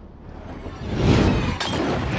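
Fiery explosion from a TV drama's soundtrack: after a quiet start, a sudden crash with a shattering, breaking-glass sound about a second in, swelling into a continuing rush of fire.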